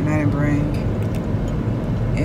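Steady low rumble of a car heard from inside the cabin, with a brief stretch of a woman's voice in the first second.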